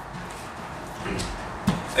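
Quiet, steady background noise, with a man clearing his throat near the end.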